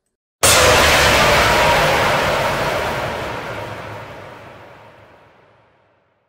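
A cinematic trailer impact hit: a sudden loud boom about half a second in, with a noisy crash over a low rumble that dies away slowly over about five seconds.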